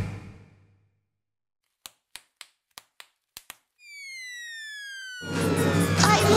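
Electronic music: the track fades out to a second of silence, then seven sharp clicks, then one synthesized tone sliding slowly down in pitch, before loud, full music with heavy bass cuts in near the end.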